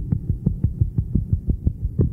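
Muffled, bass-heavy music from an old cassette demo recording: a steady run of low thumps, about six a second, over a low drone.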